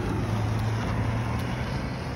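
Street traffic: a motor vehicle's engine running with a steady low hum over general road noise.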